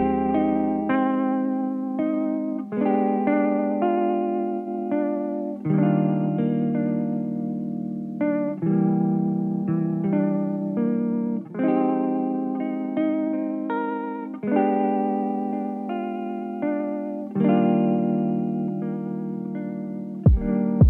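Background music: a guitar with a chorus effect playing chords that ring and fade, a new chord every half second to a second.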